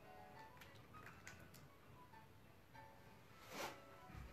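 Faint background music at near-silent level, with a few small ticks and a brief rustle near the end, a body and clothing shifting on an exercise mat.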